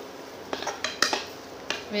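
A metal spoon scraping and clinking against a frying pan as it stirs fried onions and tomatoes, a few sharp clicks spread from about half a second in.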